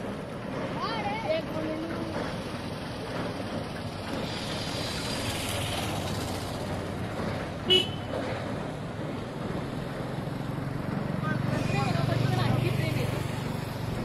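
Road traffic and people's voices on a bridge. A vehicle's low rumble builds toward the end, and a brief sharp, loud sound about eight seconds in stands above the rest.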